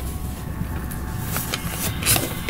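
Light rubs and soft ticks of hands handling a cardboard LP jacket, over a steady low background hum.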